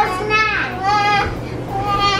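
A young girl imitating a baby: high-pitched, drawn-out wordless cries that slide up and down in pitch, about two or three of them.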